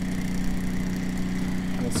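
Bedini SG pulse motor with a six-magnet ferrite rotor running steadily at about 1800 RPM, giving an even electrical hum from its pulsed coil.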